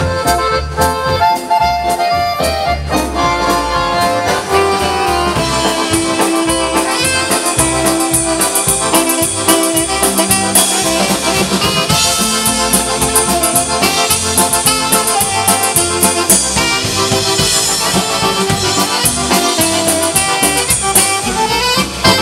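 Live dance band playing: a piano accordion leads with saxophone over a steady drum-kit beat.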